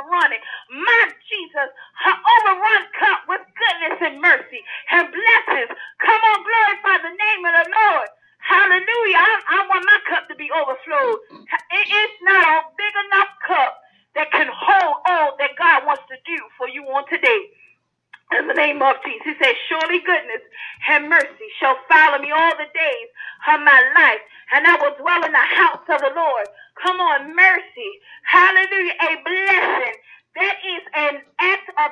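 Speech: a preacher's voice talking almost without letup, with brief pauses about eight, fourteen and seventeen seconds in.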